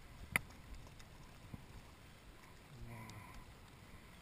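A single sharp click from the spinning rod and reel being handled, about a third of a second in, over faint steady outdoor background noise. A brief low mutter follows near three seconds in.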